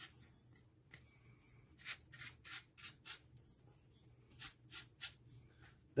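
Stiff-bristled chip brush dry-brushing the textured edges of a painted XPS foam terrain tile: quick, faint scratchy strokes in short runs with brief pauses, the near-dry brush just catching the raised texture to pick out highlights.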